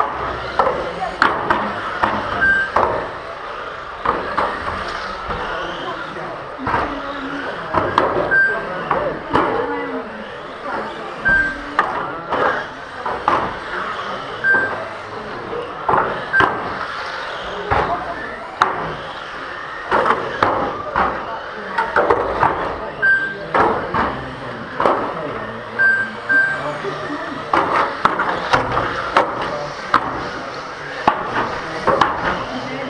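Race-hall ambience for 1/12-scale electric RC cars: indistinct background voices, many sharp knocks and clacks, and short high beeps from the lap counter at irregular intervals as cars cross the line.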